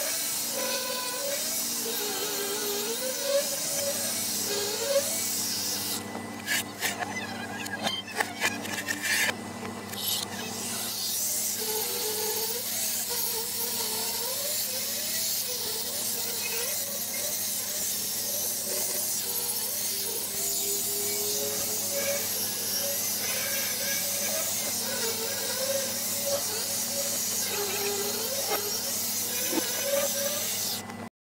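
Angle grinder cleaning up cut edges on a steel cement-mixer frame, its whine dipping and rising in pitch as it is pressed into the metal. About six seconds in it stops for a few seconds with several clanks, then grinding resumes.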